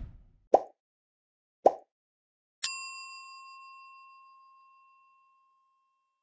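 Animated logo sound effects: two short pops a little over a second apart, then a bright bell-like ding that rings out and fades over about two and a half seconds.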